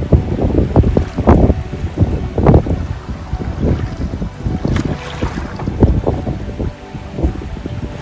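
Wind buffeting the microphone in uneven gusts over choppy river water.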